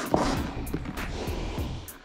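Rustling handling noise from a zippered, fabric-covered hard drone case as its lid is lifted open, over background music.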